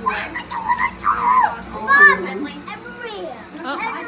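Overlapping voices of children and adults chattering and calling out, with high children's squeals. The loudest cry comes about two seconds in.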